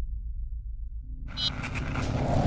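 Logo-intro sound design: a deep, pulsing rumble, then about a second in a rising whoosh that swells into a loud burst.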